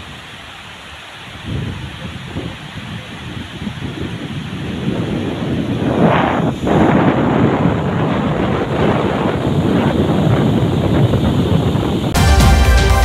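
Steady rush of water pouring over a dam's overflow spillway, with wind buffeting the microphone. It grows louder over the first half and then holds.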